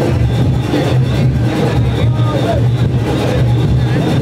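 A Junkanoo band playing loudly: dense goatskin drumming with horns and cowbells, with voices mixed in.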